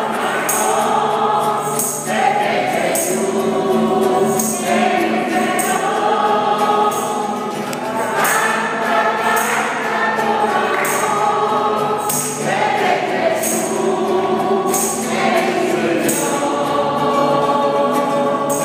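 A congregation singing a worship song together, accompanied by acoustic guitar, with a steady beat of sharp strikes running under the voices.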